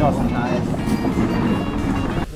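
Background music mixed with talk and a steady hum of outdoor street noise.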